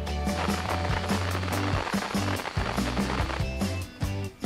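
Background music with a repeating bass line, over the crinkling and rustling of a plastic MRE ration pouch and the packets inside it being handled and rummaged through.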